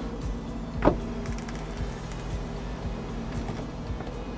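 Electric lift motor of a Winnebago Revel's EuroLoft drop-down bed running steadily as the bed moves, worked by a push-button switch. Background music runs under it, with a short swooping sound about a second in.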